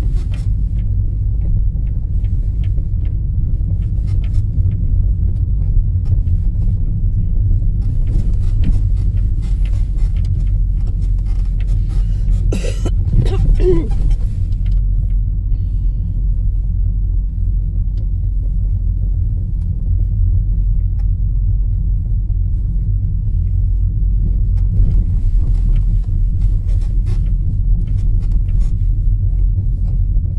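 A car driving slowly on a rough village road, heard from inside: a steady low rumble of engine and tyres, with small knocks from the uneven surface and one brief sharper sound about halfway through.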